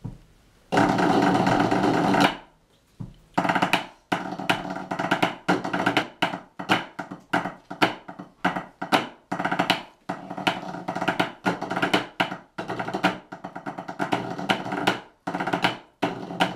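Pipe band drummers playing rubber practice pads in unison. A sustained roll comes about a second in, then after a short break a 2/4 march is played in tight, rhythmic stick strokes.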